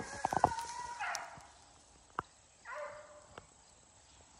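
The last of a shotgun shot's echo fades out at the start. Then come two short, distant beagle bays, about a second in and again near three seconds, with a few sharp clicks between them.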